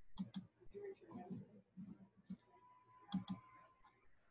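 Faint computer mouse clicks: a quick double click at the start and another about three seconds later, as the media player is worked.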